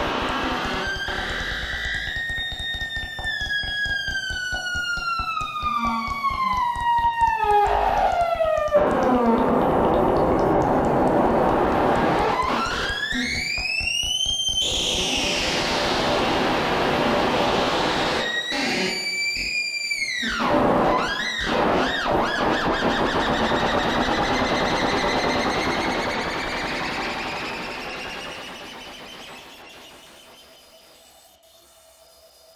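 Live-coded electronic music: synthesized pitched tones glide over a dense hissing texture. A long, slow falling glide is followed by rising sweeps and then short arching swoops, and the sound fades out over the last few seconds.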